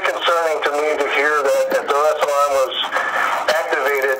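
A man talking over a phone line, his voice thin and narrow with no low end, speaking without a break.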